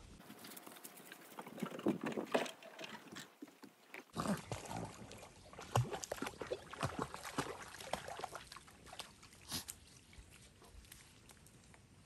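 Jaguar cubs and a small dog play-fighting: short, irregular animal sounds and scuffles that come thick and fast through most of the stretch.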